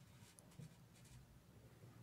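Faint rustle and scratch of a needle and embroidery thread being drawn under and over stitches on hooped fabric, over a low steady hum.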